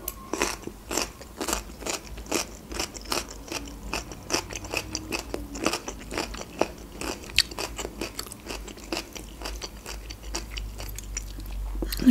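A person chewing a mouthful of meat-stuffed bell pepper: an irregular run of sharp mouth clicks and smacks, several a second.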